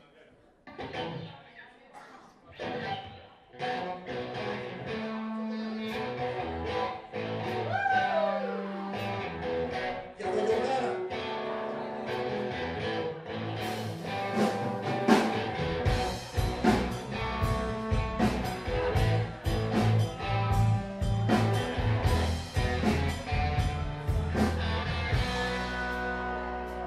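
Live band starting a song: electric guitar chords come in separately at first, with sliding notes about a third of the way in, then drums and bass join just past halfway and the full band plays on.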